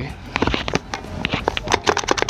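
A run of small clicks and knocks from a pressure washer's spray lance being fitted into its plastic trigger gun.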